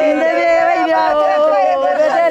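Several women's voices wailing in a mourning lament, overlapping in long, drawn-out, wavering cries.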